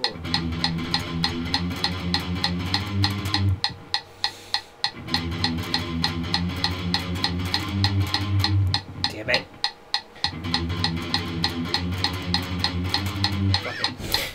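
Electric guitar playing a fast palm-muted riff on the low strings, in three runs with short breaks between them, over a steady metronome click.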